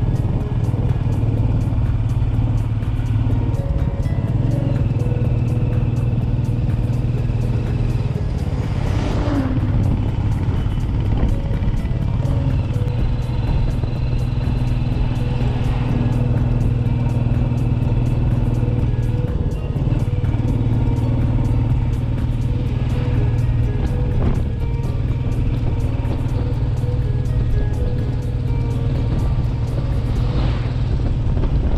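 Background music with a steady low bass line, laid over a motorcycle's engine and wind noise while riding. An oncoming truck whooshes past at the very end.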